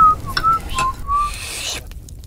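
A person whistling a short, carefree tune: a few brief notes in the first second and a half, then quiet.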